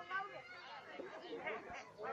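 Indistinct chatter of several people talking, with no clear words.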